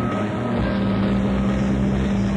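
Live jazz-rock band of electric guitar, bass and keyboards holding a sustained chord over a long held low note, heard on a muffled audience cassette recording.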